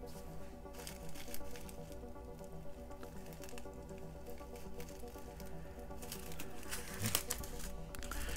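Soft background music plays steadily. Small plastic zip-lock bags of diamond painting drills crinkle in short bursts as they are handled, most clearly near the end.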